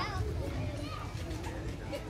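Faint voices of children and people talking and playing at a distance, over a steady low rumble.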